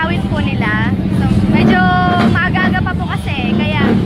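A woman talking over a steady low mechanical drone.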